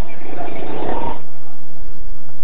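Crackling, garbled noise on a telephone line as the call breaks up. It drops away a little over a second in: the connection has been lost.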